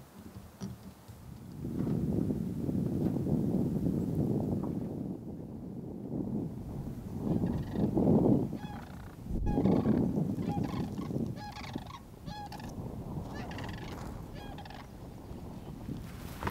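A flock of sandhill cranes calling: overlapping rolling, rattling calls that swell in several waves, with higher call notes joining in during the second half.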